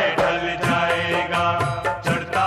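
Music from a Hindi rap track: the beat plays with regular drum hits under held, pitched melodic tones while the rapped verse pauses.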